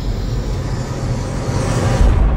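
Logo-animation sound effect: a low rumble under a rushing noise that swells and brightens toward the end, building to a hit.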